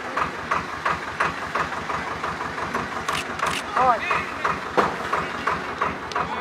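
Voices talking, over a steady low rumble.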